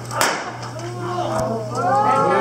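A revolver firing a blank in a staged gunfight: one sharp shot just after the start, then a fainter crack about a second later. A voice starts near the end.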